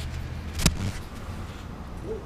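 Handling noise on a hand-held action camera being swung around: a low rumble with one sharp click about two-thirds of a second in.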